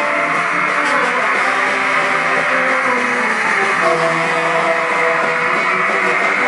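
A punk rock band playing live with guitar, loud and continuous.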